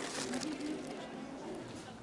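A bird cooing faintly in the first half over steady outdoor background noise.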